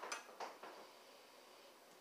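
A man sniffing beer from a glass mug: two faint, short sniffs in the first half second, then near silence.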